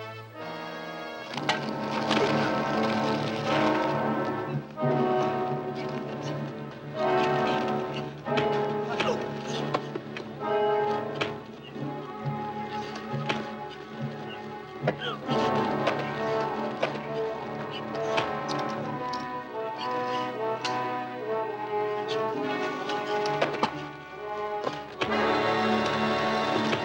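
Dramatic orchestral action score with brass playing throughout, with sharp thuds of blows landing through it.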